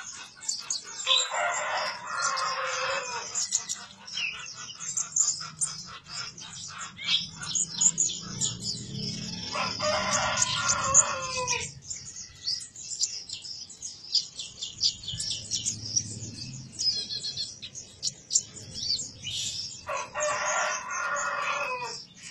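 Caged kolibri ninja sunbird giving a rapid, high, chattering call (cetrekan) throughout. A rooster crows three times, near the start, in the middle and at the end, each crow about two seconds long and dropping in pitch as it ends; the crows are the loudest sounds.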